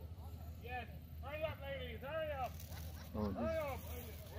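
A person's voice: a few short vocal sounds rising and falling in pitch, the last one an 'oh'. A steady low hum runs underneath.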